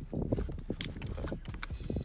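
Pull-tab sardine tin being peeled open by hand: irregular small metallic clicks and crackles as the lid is worked back.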